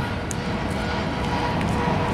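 Steady outdoor rumble and hiss, with a faint steady hum.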